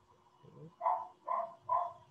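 A dog barking in the background: three short, quick barks about a second in.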